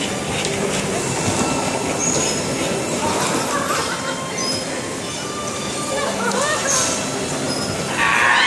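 Electric bumper cars running on a rink: a steady rolling rumble with short, high squeals scattered through it, and some riders' voices.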